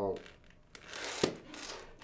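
Vinyl LP record jackets being flipped forward in a wooden record bin: a rustling, sliding scrape of the sleeves with one sharp tap a little past the middle.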